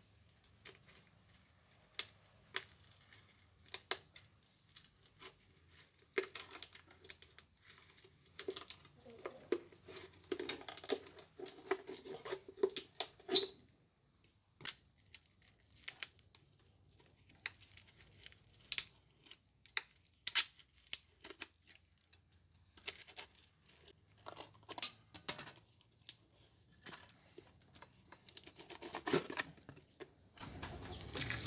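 Machete blade scraping, prying and cutting at a plastic bucket wedged inside set concrete, with irregular cracks, knocks and scrapes as the plastic mould is broken free of the cast stove. The busiest stretch of scraping and cracking comes in the first half.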